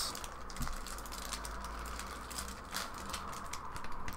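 A stack of trading cards being handled in its clear plastic wrap: scattered light clicks and crinkles of plastic and card.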